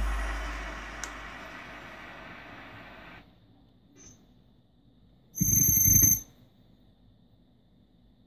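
Electronic drum sounds from a Korg TR-Rack sound module ringing out and dying away over about three seconds. Then, a little past five seconds in, the module sounds one short synthesized note with a bell-like ring, lasting under a second.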